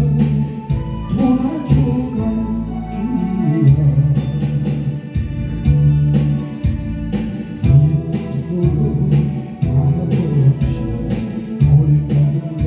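Korean pop song with a steady beat and a bass line, a man singing over it into a handheld microphone.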